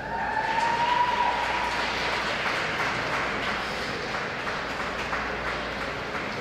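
Audience applauding at the end of a figure skating program. A held tone slides slightly upward over the first second and a half.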